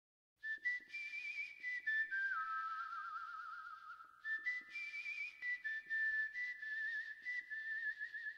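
A person whistling a slow melody: held notes with a wavering vibrato, stepping down and back up, with breathy hiss around the tone. It starts about half a second in and breaks briefly about four seconds in.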